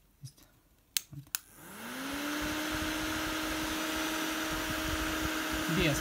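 Handheld battery-powered mini fan switched on with two clicks of its button about a second in. Its small motor spins up, rising in pitch, then runs at a steady whir with a constant hum.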